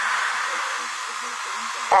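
Steady static hiss from a television speaker as a badly damaged VHS tape plays: the tape has lost its signal. A voice starts to speak at the very end.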